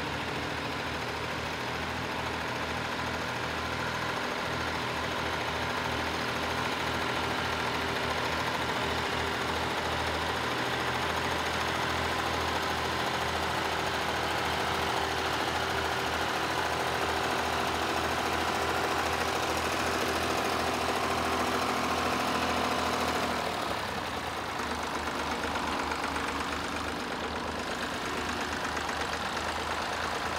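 Vintage Fordson Dexta tractor's diesel engine running steadily while pulling a plough through the field. A little over three-quarters of the way through, the sound drops slightly and turns into a more distant tractor engine.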